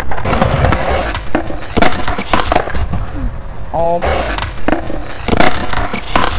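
Skateboard clatter on concrete: rolling noise broken by many sharp knocks and clacks, with a short voice about four seconds in.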